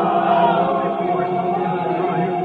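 A congregation singing a slow hymn together, with long held notes.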